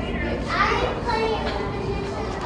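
Children's voices talking over one another at play, with no single clear speaker.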